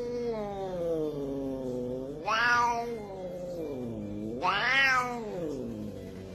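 Domestic cat giving a long, drawn-out growling yowl, an angry warning call. Its pitch sags low, then rises and grows louder twice, about two and four and a half seconds in, before sinking again.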